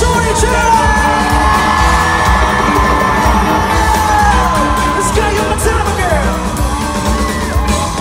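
Live pop-rock band playing loudly through a concert arena's sound system, with fans yelling and cheering over the music.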